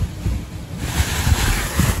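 Wind buffeting the microphone: an unsteady rushing noise with low rumbling gusts.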